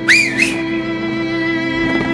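A man's short, loud whistle through his fingers, sliding up, dipping and rising again within about half a second, over background music with long held string notes.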